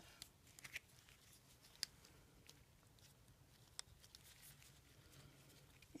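Near silence, with a few faint, scattered clicks as the overhead console's circuit board and plastic housing are handled in gloved hands.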